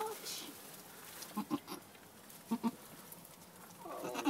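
A few short, soft, low bleats from goats, a mother goat with her newborn kids: one call right at the start, then two quick pairs of calls around the middle.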